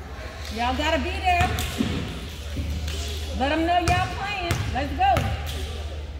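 A basketball bounced several times on a gym floor at the free-throw line, with people's voices calling out over it.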